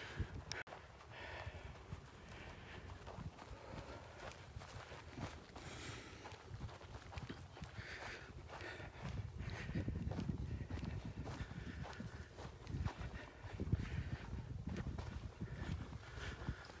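Footsteps on dry dune grass and sand as someone walks, a steady run of soft steps, with a low rumble that grows louder from about halfway through.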